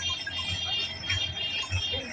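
Dance music from a DJ sound system carried on a tractor, its bass beat the most prominent part, with a steady high ringing tone over it.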